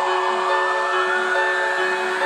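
Music playing through a portable Bluetooth speaker: a held chord of steady tones with almost no bass.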